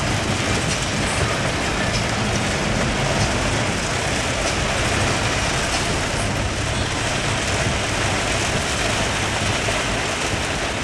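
Heavy rain falling on the roof and windshield of a moving Isuzu Crosswind, heard from inside the cabin as a steady hiss over the low rumble of the engine and road. It stays even throughout.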